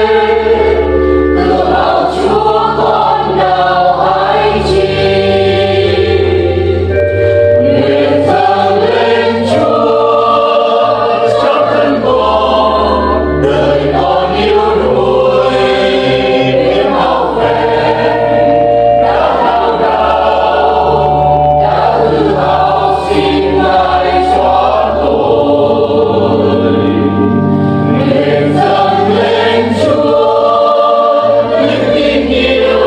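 A church choir of mixed voices singing a Vietnamese Catholic hymn in held, sustained notes over a steady accompaniment with bass notes underneath.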